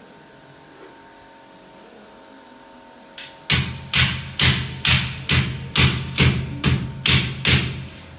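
Repeated hammering blows at an air conditioner's metal wall-mounting plate while it is being fixed to the wall. About ten sharp, loud strikes, roughly two a second, starting about three and a half seconds in.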